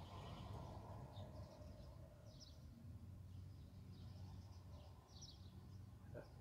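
Faint outdoor ambience: a low steady hum with scattered faint, short bird chirps.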